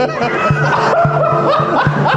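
A man laughing heartily over background music with a steady beat.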